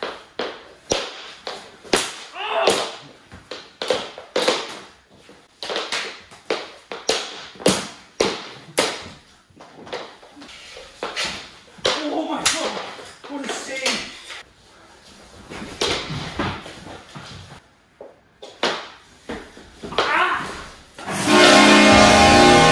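Plastic mini hockey sticks and a small puck clacking and slapping on a hardwood floor in quick, irregular hits during a knee-hockey game, with voices shouting now and then. Music comes in near the end.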